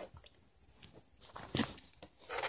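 A budgie pecking and nibbling at mashed baked potato on a plate: a few soft, small ticks, with a brief louder scuff about one and a half seconds in.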